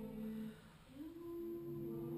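A small group of women humming long held notes together on several pitches, breaking off briefly about half a second in, then sliding into new held notes about a second in.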